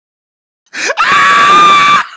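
A loud, high-pitched scream that comes in suddenly under a second in. A short rising cry is followed by a held scream at a steady pitch for about a second.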